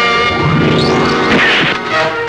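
Action background music, with a loud crash-like hit sound effect about one and a half seconds in.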